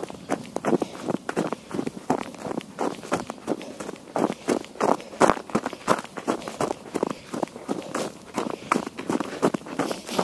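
Footsteps of a person running on snow, each footfall crunching into the snow in a quick, even rhythm of about three steps a second.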